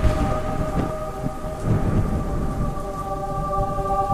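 Rain and rolling thunder under a held synth chord: the atmospheric opening of a hip-hop track before the beat comes in.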